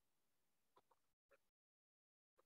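Near silence: faint gated hiss with two tiny faint blips.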